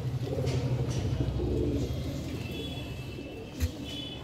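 White domestic tom turkey drumming in strut: a low, pulsing hum that fades out about three seconds in. A brief sharp sound follows near the end.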